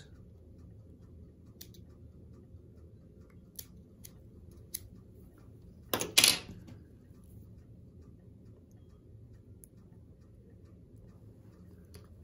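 Small fly-tying scissors snipping off the excess wing-case material at the vise: a few faint, sharp clicks, then one louder brief double knock about six seconds in as tools are handled.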